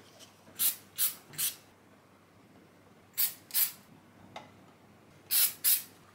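Aerosol can of CA glue activator spraying in short hissing bursts: seven quick squirts in groups of three, two and two, setting the glue on freshly joined parts.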